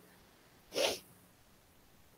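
A single brief, breathy sound from a person, about a second in.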